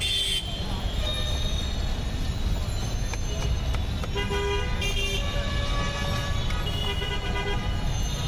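Street traffic running as a steady low rumble, with a vehicle horn sounding two short blasts about four seconds in.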